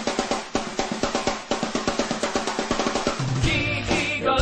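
Background music: the intro of a rock song, a fast run of drum hits on the kit, with bass and the rest of the band coming in about three and a half seconds in.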